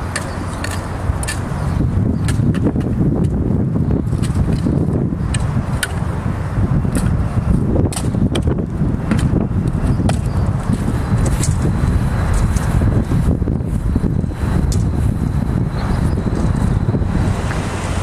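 Wind buffeting the microphone as a loud, steady rumble, with scattered sharp scrapes and clicks of shovels and trowels cutting into soil.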